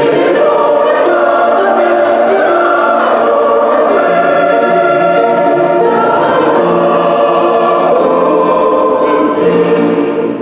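Mixed choir of women's and men's voices singing together in harmony, in long held notes that change step by step, in a stone church.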